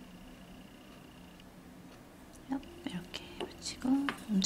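Quiet room tone with a faint steady high tone, then soft speech in short bursts from about two and a half seconds in.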